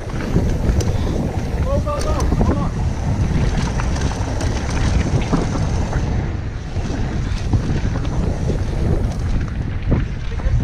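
Wind buffeting an action camera's microphone as a mountain bike rolls fast down a dirt trail, with tyre noise from the dirt and gravel and frequent rattling clicks from the bike. A brief pitched, voice-like sound about two seconds in.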